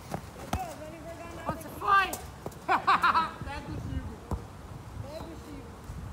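Boys shouting to each other, with a few sharp thuds of a football being kicked.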